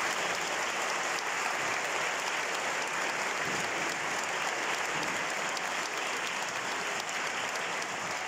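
Audience applauding steadily, a dense even clapping that eases slightly near the end.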